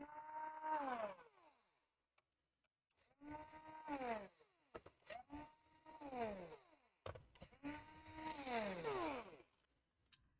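Cordless electric screwdriver backing out small screws from a laptop's internals, in four short runs. Each time the motor whine holds steady and then falls in pitch as it winds down, with light clicks between runs.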